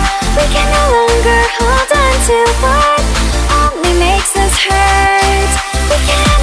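Electronic dance music with a synth lead that slides between notes over a pulsing bass beat about twice a second, with no vocals.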